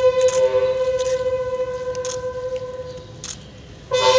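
Ceremonial salute music played on wind instruments during a flag hoisting: one long held note that fades away over about three seconds, then a new note begins right at the end.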